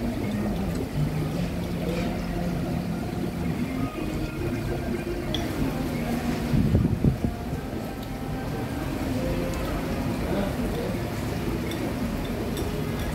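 Restaurant dining-room ambience: indistinct background voices over a steady hubbub, with occasional light clinks of utensils on crockery.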